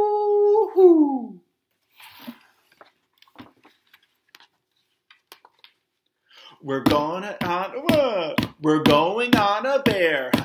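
A man's voice giving a drawn-out "whoo" that slides down in pitch, imitating the snowstorm wind, ending about a second and a half in; then faint rustles and taps of picture-book pages being turned, followed by chanted speech in the last few seconds.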